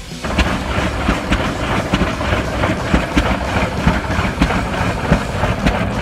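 Old Rumely OilPull tractor engine running, a rapid, somewhat uneven beat of knocks over a rumbling noise. It starts abruptly just after the beginning, cutting in where music was playing.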